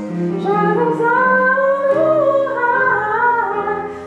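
Choir singing a gospel song, a woman's voice leading with a winding line that rises and falls over held chords.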